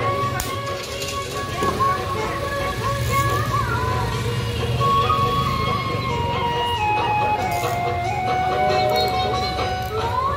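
Music: a held melody line that steps down in pitch in the second half, over a steady low bass.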